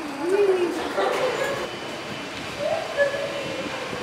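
Indistinct voices of people talking in short phrases, over steady background noise.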